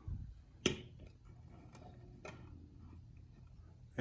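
A sharp knock less than a second in, then two fainter clicks, as a small metal LED can light is handled and set down on a tile floor.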